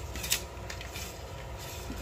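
Steady low background hum, with a faint click or two about a third of a second in, from a fishing rod being handled.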